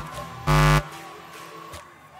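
A pop, then about half a second in a short, loud electrical buzz through the PA speakers that cuts off suddenly: handling noise from the cable connection of an acoustic-electric guitar as it is picked up off its stand.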